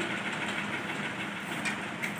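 Steady background noise with no distinct event, and a faint click about one and a half seconds in.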